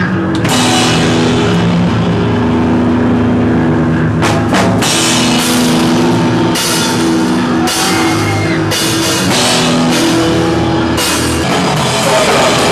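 Live powerviolence band playing loud: distorted guitar chords over drums, with cymbal crashes coming in hard from about four seconds in, heard up close to the drum kit.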